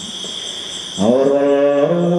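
Khmer Buddhist smot chanting by a young male novice monk singing into a microphone. He pauses for about a second, then comes back on a long, ornamented held note that slides up into place and bends down near the end.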